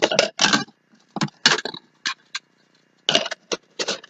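Handling noise from a clear plastic cup and a piece of paper being worked by hand: four short bursts of rustling and clicking with silent gaps between them.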